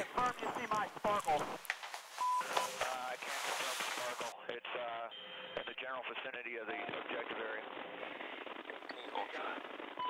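Faint, unclear voices over a military radio link, with the thin, narrow sound of radio transmission from about four seconds in. Two short steady beeps come through, about two seconds in and about five and a half seconds in.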